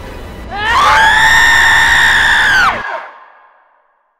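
A woman's shrill, high-pitched scream that rises, is held for about two seconds, then bends down in pitch and breaks off, leaving an echoing tail that fades away. A low rumble beneath it stops abruptly as the scream ends.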